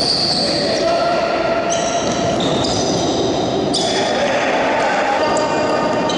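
The sound of a futsal game in a reverberant sports hall: the ball being kicked and bouncing off the hard court, with players' voices calling out.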